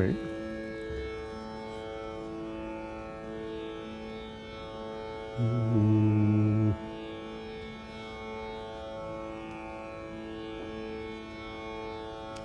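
A steady sruti drone of the kind that accompanies Carnatic singing, holding its pitches unchanged. About halfway through, a louder low note is held flat for just over a second, then stops.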